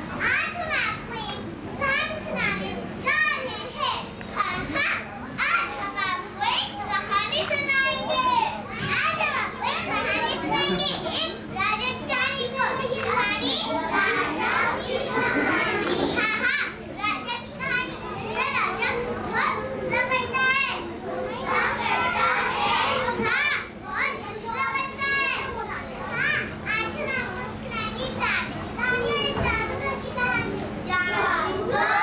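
High voices of young children speaking their lines on stage, one after another in quick turns, over a steady low hum.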